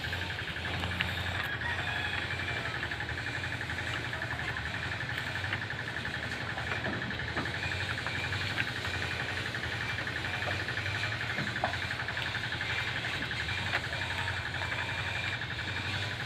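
Steady, high, rapidly pulsing insect trill over a low steady hum, with a few small clicks and rustles from goats tearing at and chewing leafy branches.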